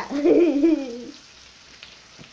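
A young woman laughing for about a second, over the faint sizzle of bacon frying in a pan.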